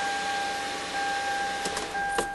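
Hyundai Santa Fe engine idling just after starting, heard from inside the cabin as a steady hum and hiss with a steady high whine.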